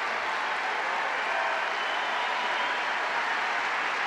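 Large audience applauding steadily.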